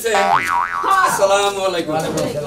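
A comic boing sound effect, its pitch sliding up and down twice about half a second in, followed by voices talking.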